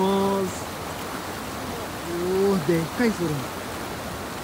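Steady rush of river water with a hooked trout splashing at the surface close to the bank as it is brought in on the line.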